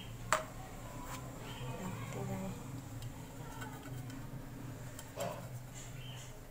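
A metal spoon clicks once, sharply, against an aluminium pot a third of a second in, then quiet handling of the spoon and cake batter in the pot, over a low steady hum.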